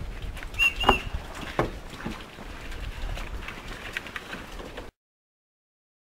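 Open-air ambience with scattered knocks and clicks from knives cutting and handling aloe vera leaves, plus a short high chirp a little after the start. The sound cuts off to silence about five seconds in.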